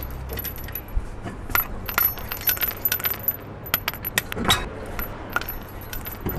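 Irregular light metallic clicking and jingling, with a thin high ringing, as the wire-linked bolt caps on a car's alloy wheel are handled and pulled off; a louder knock comes about four and a half seconds in.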